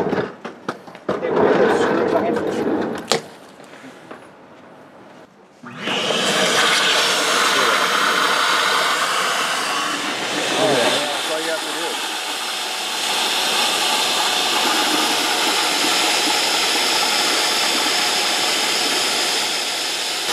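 A wet/dry shop vacuum switches on about six seconds in and runs with a steady, even rush, pulling a vacuum on the laser tube's coolant line to draw the coolant out. Before it starts there are a few handling knocks.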